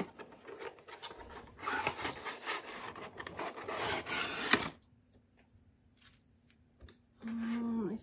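Plastic packaging rustling and crinkling as it is pulled off a reed diffuser, ending in a sharp tap about four and a half seconds in.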